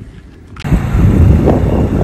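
Faint wind, then, about half a second in, a sudden switch to a loud low rumble of wind buffeting the microphone on a boat underway, with the noise of the boat on the water.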